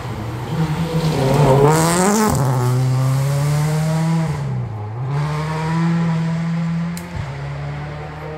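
Rally car engine at high revs, out of sight on the gravel stage: the revs climb to a peak about two seconds in and drop sharply at a gear change, dip again near the middle and pick back up, loudest early on. A single sharp crack sounds near the end.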